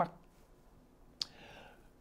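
A single sharp mouth click a little past the middle of a pause in a man's talk, followed by a faint breath.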